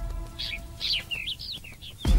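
A bird chirping: a quick run of about eight short, high chirps starting about half a second in, over background music that fades away.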